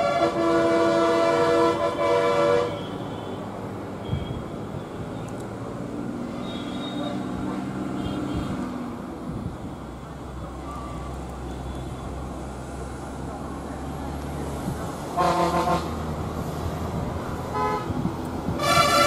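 Vehicle horn sounding for about the first two and a half seconds, several tones at once, then stopping. A vehicle engine runs at a lower, steady level after it, and a second, shorter horn blast comes about fifteen seconds in.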